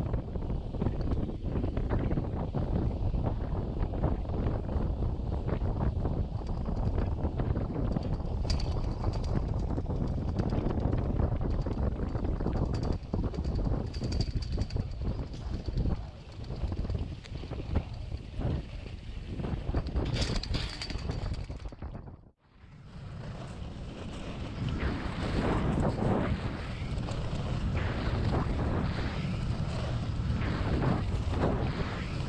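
Wind buffeting the camera microphone over the steady hiss of skis sliding on groomed snow while towed up a drag lift, with a few faint brief high squeaks. About two-thirds of the way in the sound cuts out suddenly and resumes as wind and ski noise while skiing downhill.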